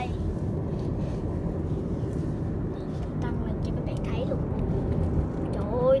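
Steady low road and engine rumble heard inside the cabin of a moving car at highway speed.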